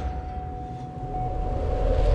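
Sound-designed logo intro between two swooshes: a low rumbling drone under one steady held tone, swelling slightly near the end.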